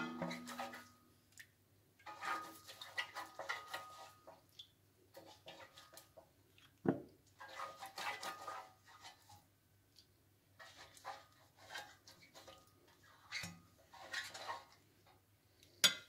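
Silicone pastry brush dabbing and sweeping melted fat over a stainless steel baking pan, in several bursts of strokes. A few dull knocks of the metal pan stand out, the loudest about seven seconds in.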